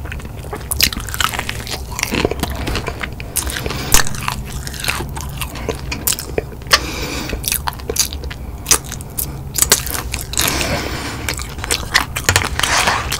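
Close-miked chewing and biting of crunchy fried chicken wing breading, with many irregular sharp crunches and crackles and wet mouth sounds.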